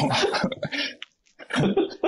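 A man coughing, a dense burst of about a second, followed by a brief pause.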